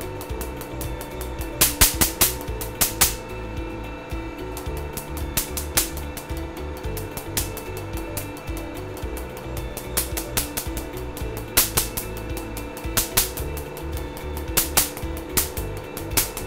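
Q-switched Nd:YAG laser pulses snapping on the skin in quick, irregular runs of sharp pops: the laser energy striking the melanin in pigmented spots. Background music plays underneath.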